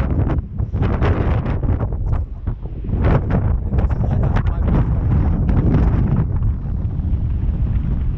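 Strong gusting wind buffeting the camera's microphone: a loud, uneven low rumble that surges with each gust.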